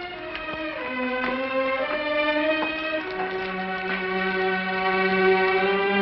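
Slow, sad bowed-string music led by a violin, playing a few long held notes and then one sustained note, growing louder toward the end.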